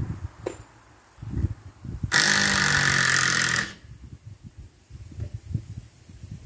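A handheld cordless power driver runs in one burst of about a second and a half, driving a screw into the lean-to's timber framing.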